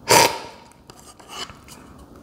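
A quick, forceful cupping slurp of brewed coffee from a spoon, drawing air in with the coffee to spray it across the palate, lasting about a third of a second. Only faint sounds follow.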